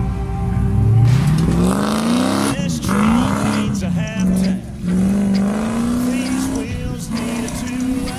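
Land Rover Discovery's engine revving hard as it climbs a steep sand obstacle. The revs rise sharply about a second in, then surge and fall back several times, with a short lift-off near the middle.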